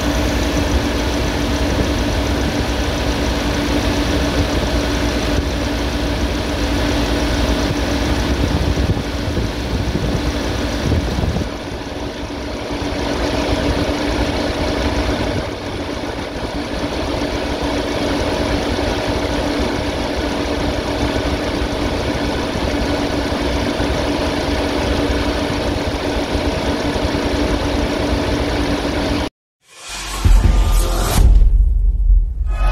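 Ford Bronco engine idling steadily, heard close up in the engine bay by the accessory belt and pulleys. The sound is even, with a steady hum, and cuts off suddenly near the end.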